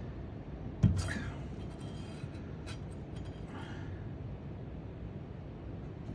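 A single sharp hammer strike about a second in: a small ball-pein hammer hitting an insulated ring crimp terminal on a workbench to crimp it onto a wire, with a short ring after the blow. Faint low background noise follows.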